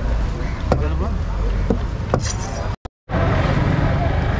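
Large knife chopping fish on a wooden block: a few sharp knocks over a steady low rumble of traffic and background voices. About three seconds in, all sound drops out for a moment.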